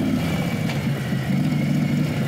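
Harley-Davidson Road Glide Special's V-twin running at low revs through a Bassani 2-into-1 Road Rage exhaust, with a pulsing beat.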